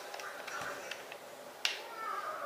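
A single sharp click about one and a half seconds in, after a few faint ticks: the power button of an HPRT T20 handheld thermal label printer being pressed to switch it on.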